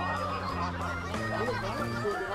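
Background music with a steady stepped bass line, under high, wavering startled exclamations and laughter from people.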